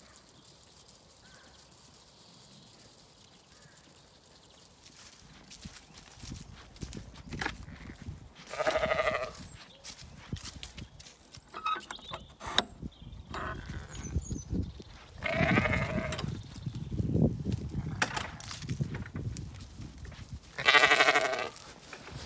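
Zwartbles sheep bleating: three loud, wavering bleats come at intervals, the first a third of the way in and the last near the end. Quieter rustling runs underneath once the first few seconds have passed.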